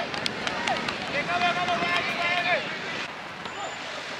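Voices shouting across a football pitch, with one long drawn-out call from about one second in to two and a half seconds. A few sharp taps come in the first second.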